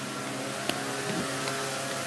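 Steady mechanical drone of a running motor, with one short click about two-thirds of a second in.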